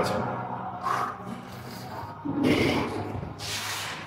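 A man breathing hard through the mouth while pressing a barbell on an incline bench, with two hissing exhalations in the second half over a low background hum.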